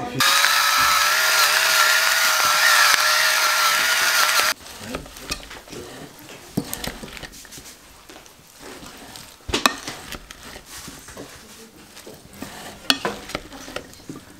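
A small electric motor whirs steadily for about four seconds, then cuts off suddenly. After that come soft clicks and rustling as salad is tossed with a wooden spoon in a ceramic bowl.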